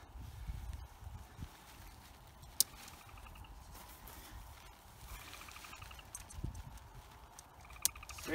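Tent poles and plastic pole clips being handled while a lightweight backpacking tent is pitched. There is a single sharp click about two and a half seconds in, like a clip snapping onto a pole, and a soft thump later, over a low rumble.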